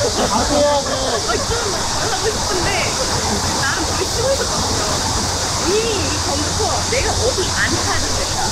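Several voices talking, overlapping one another, over a steady high hiss.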